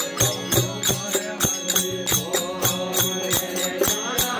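Folk devotional singing: men's voices chanting over a fast, steady jingling percussion beat of about five strokes a second and a steady low drone, the voices coming in about halfway through.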